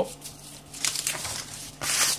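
A sheet of paper rustling as it is picked up and handled, in a few short bursts.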